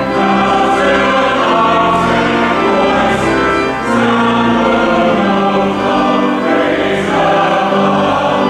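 Church choir singing an anthem in held chords.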